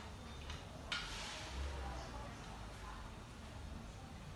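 A woman drinking from a mug, faint: a short click about a second in, followed by a soft noisy sip.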